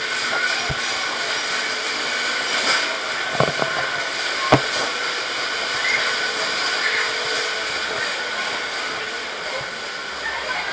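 Steady hissing machine noise inside a walk-through funhouse maze, with a few sharp knocks, the loudest about three and a half and four and a half seconds in.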